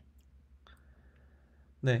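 A few faint, sharp clicks during a low-level pause, one of them about two thirds of a second in, then a man's voice starts near the end.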